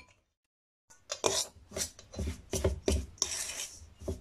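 Metal fork scraping and stirring through crumbly flour-and-shortening dough against a stainless steel bowl, in a quick run of scrapes that starts about a second in. Cold water is being worked into the piaya dough a spoonful at a time.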